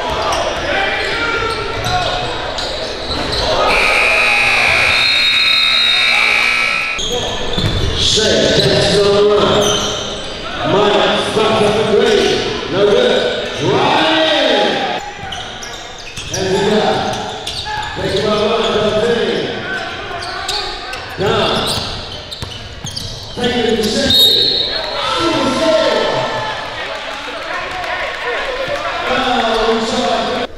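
Basketball bouncing on a hardwood gym floor during a game, with players' and spectators' voices echoing around the hall. About four seconds in, a steady tone sounds for about three seconds.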